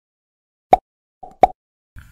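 Two short pops about three quarters of a second apart, with a fainter blip just before the second: sound effects for an animated channel logo.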